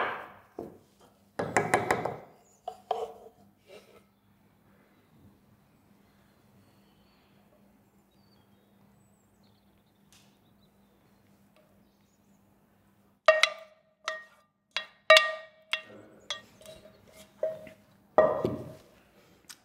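A wooden spoon knocking and scraping inside a metal saucepan, several sharp clicks each with a brief ring, as the last of the tapioca pudding mixture is scraped into the pie dish; before that, a long quiet stretch while the mixture pours.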